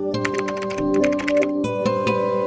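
Computer keyboard typing, a quick run of key clicks, over background music with long held notes.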